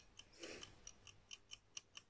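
Near silence, with a faint, even mechanical ticking of about four ticks a second and a faint breath-like sound about half a second in.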